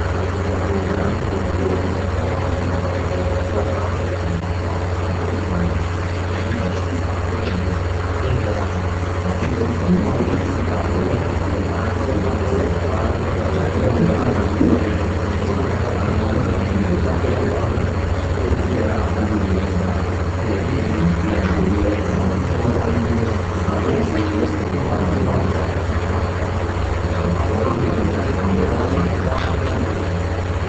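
Steady low hum with a noisy hiss over it, unchanging throughout.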